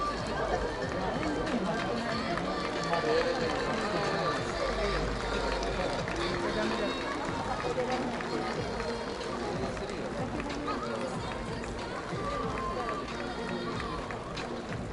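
Stadium ambience: many overlapping voices with music playing over the public-address system, steady throughout with no single loud event.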